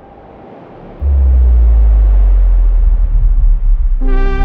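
A faint hiss, then about a second in a loud, very deep bass rumble comes in suddenly and holds steady. It is a cinematic sound-design swell in the soundtrack of a reveal, just before the music starts.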